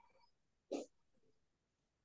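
Near silence, broken once, about three-quarters of a second in, by a short noisy puff of sound. It is of the breath-like kind a video-call microphone picks up.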